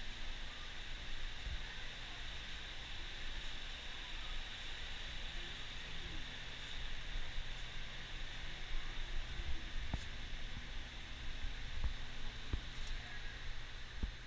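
Steady outdoor background noise: an even hiss with a low rumble underneath, and a couple of faint knocks near the end.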